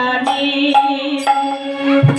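Bengali kirtan music: held, sustained melodic notes over a steady drone, with light metallic strikes about twice a second, and the khol drum largely silent.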